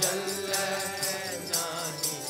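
Gurbani kirtan: voices singing a shabad over a harmonium's held notes, with a steady percussion beat about twice a second.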